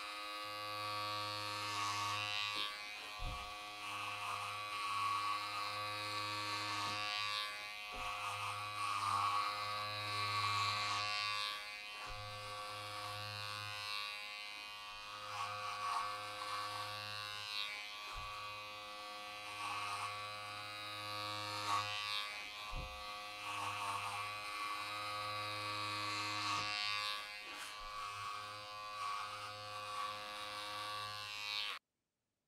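Electric clippers buzzing steadily as they shear the yarn pile of a tufted rug. A brighter cutting rasp swells and fades every couple of seconds as the blade passes through the tufts.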